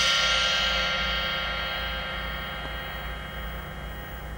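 The long, slowly fading ring of a struck metal percussion instrument, many overtones dying away together, with a low steady hum underneath.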